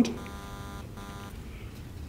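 Pause in speech: room tone with a faint buzz that stops a little over a second in.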